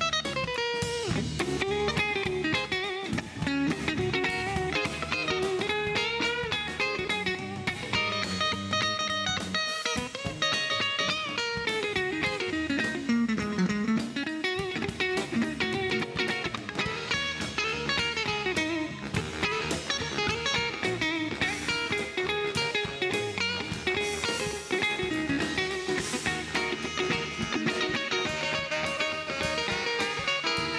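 Live ska band playing, with an electric guitar solo line bending up and down over bass, drums and horns.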